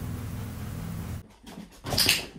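A dog's low, steady growl that stops abruptly just over a second in, followed by a sharp knock near the end.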